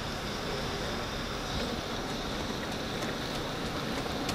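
Steady hiss of a Jeep SUV pulling slowly away on wet asphalt, its tyres on the wet surface, mixed with wind on the microphone.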